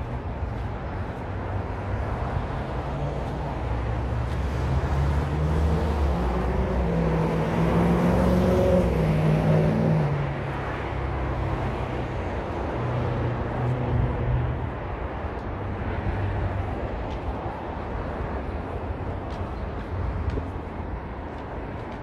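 City street traffic noise with a low steady rumble; a motor vehicle passes close by, its engine note rising and then falling away, loudest about eight to ten seconds in, with a weaker pass a few seconds later.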